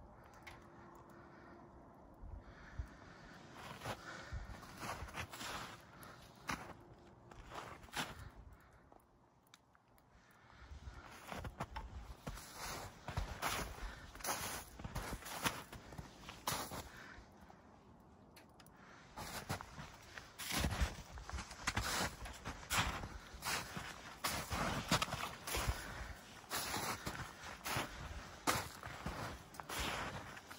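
Footsteps in snow at an uneven walking pace, pausing briefly about ten seconds in, then resuming and growing louder in the second half.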